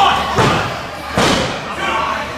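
Two heavy thuds in a wrestling ring, about a second apart, with voices around them.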